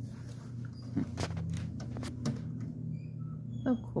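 A few sharp clicks and taps from a small wooden battery lantern and its loose parts being handled on a table, over a steady low hum.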